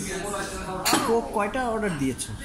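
A child's voice, with a single clink of tableware on the table about a second in.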